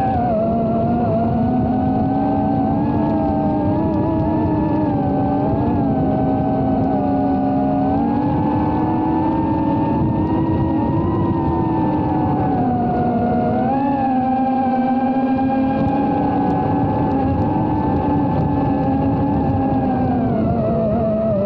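Emax Tinyhawk II Freestyle micro FPV quadcopter's brushless motors and propellers whining steadily and loudly, heard close up from a camera mounted on the drone. The pitch drifts gently up and down with the throttle, dipping briefly about two thirds of the way through before rising again.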